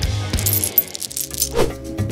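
Coins clinking as a small handful of change is dropped or jingled, over background music.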